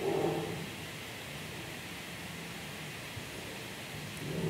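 Room tone: a steady, low hiss of microphone and room noise with a faint hum, and a soft brief swell at the start.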